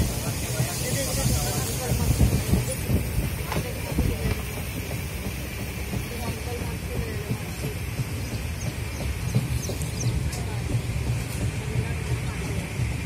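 Steady low rumble of a moving vehicle, heard from on board, with faint voices in the background.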